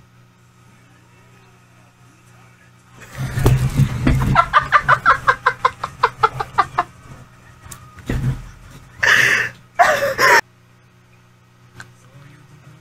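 A woman laughing hard: a run of quick, high-pitched cackles, about five a second, for a few seconds. Near the end come a low thump and two short breathy bursts of laughter.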